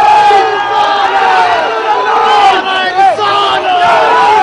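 A large crowd of people shouting loudly, many voices overlapping at once.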